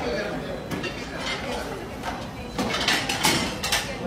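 Busy commercial kitchen: crew voices talking over the clink and clatter of china plates and cutlery being set down at the pass, with a run of sharper clinks in the second half.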